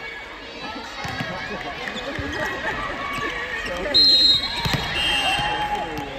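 Volleyball play: players' shouted calls and a ball being struck, with a short high whistle blast about four seconds in as the loudest sound.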